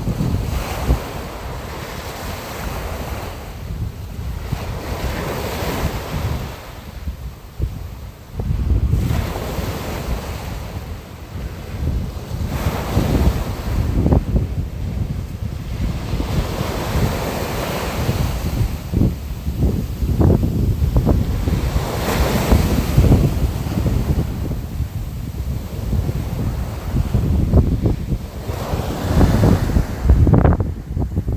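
Wind blowing on the microphone in gusts, over the wash of sea waves.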